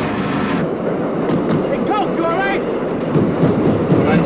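Elevated subway train running on its tracks: a steady, dense rumble and clatter, with a brief burst of brighter noise at the very start.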